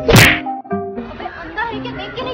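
A single loud, sharp slap just after the start, over background music.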